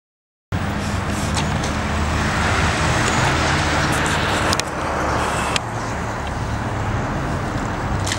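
Steady street ambience like road traffic, a continuous noisy wash with a low rumble, cutting in suddenly out of silence about half a second in, with a few faint clicks.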